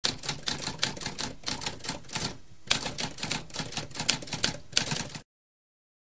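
Typewriter typing: a quick run of keystrokes with a short pause about halfway through, stopping abruptly a little past five seconds.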